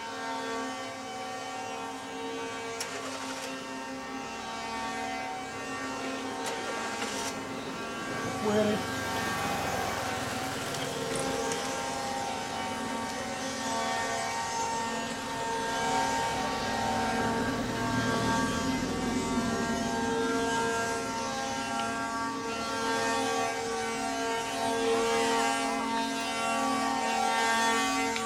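Wooden axles of a line of ox carts (carros de boi) singing: a steady droning whine of many tones at once, slowly growing louder as the carts draw near. A brief knock sounds about eight seconds in.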